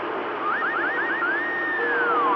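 CB radio channel hiss with about five quick rising whistle tones about half a second in, followed by one long whistle tone that holds and then slides down. A steady low tone joins near the end.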